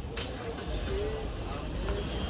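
Maruti Grand Vitara's 1.5-litre four-cylinder engine running low as the SUV moves off slowly, with one sharp click just after the start.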